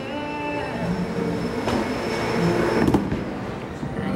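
Heavy bowling ball rolling down a wooden lane after being pushed off a bowling ramp, a steady rumble like a train that builds as it goes. A louder knock comes about three seconds in, with a softer one a little before it.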